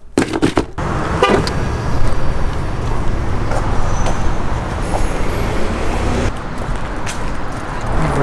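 Road traffic noise: a steady low rumble of cars, starting about a second in after a few brief clicks.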